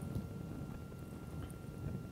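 Quiet room ambience in a large meeting room: a low rumble and a faint steady high tone, with a few soft knocks.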